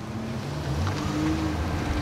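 SUV moving slowly past at close range: a steady low engine and tyre rumble under a rushing wind noise on the microphone.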